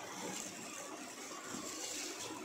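A hand mixing chopped raw mango pieces into a dry spice-powder masala in a steel bowl: a soft, continuous rubbing and squishing.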